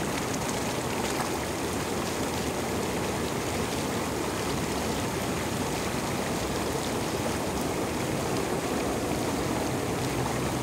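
Inflatable hot tub's bubble jets running, the water churning and frothing in a steady, unbroken rush.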